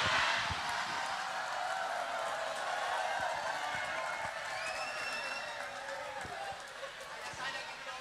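Large crowd laughing together, loudest at the start and slowly dying away.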